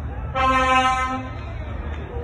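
A vehicle horn sounds one toot of about a second at a single steady pitch, over a steady low rumble.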